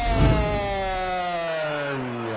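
A ring announcer's amplified voice holds the last syllable of the winner's name, 'Heron', in one long, drawn-out call that slowly falls in pitch. A low thump comes about a quarter second in.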